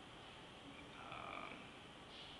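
Near silence: quiet room tone in a pause of a speech, with one brief, faint high-pitched sound about a second in.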